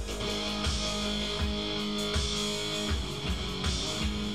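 Electric guitar tuned to an open chord, strummed so that one chord rings out, over a repeating electronic drum beat.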